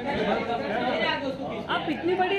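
Several people talking at once: overlapping chatter and voices.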